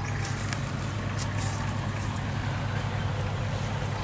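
Iseki 5470 tractor's diesel engine idling with a steady low hum.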